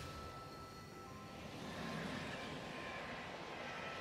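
Faint soundtrack of a cinematic music-video story: soft ambient music with held tones and a rushing swell that builds about halfway through.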